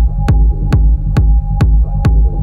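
Techno track in a DJ mix: a pounding four-on-the-floor kick drum at about two beats a second, over a deep bass and a held high tone, with no vocals.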